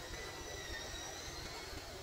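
Steady rush of flowing spring water from the pond, with a faint, thin, high tone over it that fades out about a second and a half in.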